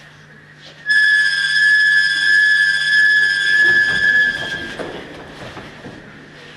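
A single high whistle note held steady for about four seconds, starting suddenly about a second in and then stopping.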